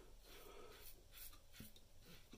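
Near silence with a few faint, short scratchy strokes of a double-edge safety razor cutting stubble through shaving lather.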